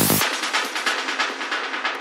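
Psytrance track dropping into a breakdown: the kick drum and rolling bassline cut out about a quarter-second in. What remains is a fast, even, thin clatter with no bass, like train wheels on rail joints.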